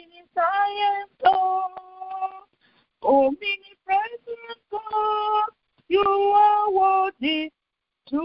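A woman singing a worship song unaccompanied, in short phrases of held notes with brief silent gaps between them.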